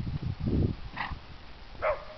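A donkey scrambling up from a roll in dry dirt, its body scuffling and scraping on the ground, then two short high yelps from an animal, the second one louder.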